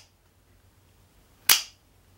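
Cheap double-action OTF switchblade knife retracting its blade: one sharp spring-driven snap about a second and a half in.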